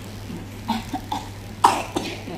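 A run of short coughs in quick succession, the loudest about one and a half seconds in.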